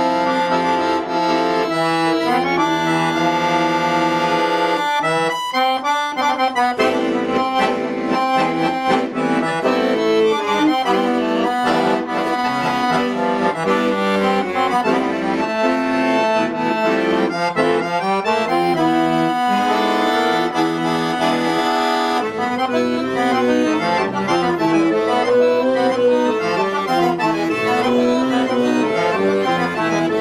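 A Bugari piano accordion played solo: held chords for the first few seconds, then busier melody lines with notes changing quickly over the bass.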